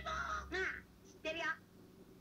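Cartoon dialogue: a high-pitched, strained shout from a young character's voice, then a short second spoken line about 1.3 seconds in.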